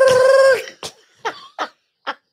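Hearty laughter: one loud, high-pitched held laugh that cuts off about half a second in, followed by several short, breathy laugh bursts.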